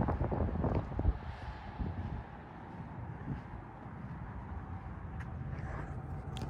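Low outdoor background noise: a steady low rumble with wind on the microphone and no distinct event.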